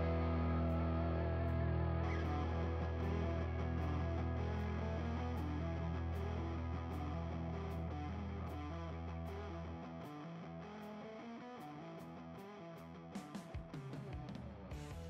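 Background music, a guitar track with long held notes, fading out gradually, with a few short knocks near the end.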